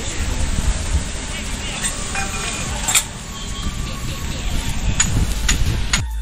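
Steady hiss of falling rain, with wind rumbling on the phone's microphone and a few sharp clicks around the middle and near the end.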